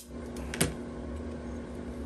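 Picture-frame backing board being handled and lifted, with one sharp click about half a second in and a couple of fainter ticks just before it. A steady low hum runs underneath.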